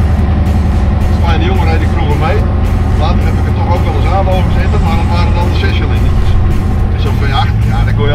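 Scania 141's V8 diesel engine running steadily on the road, heard from inside the cab as an even, deep drone.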